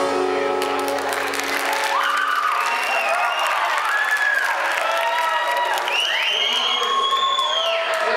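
A live rock band's last chord rings out and stops about two seconds in. Audience applause follows, with voices calling out over it.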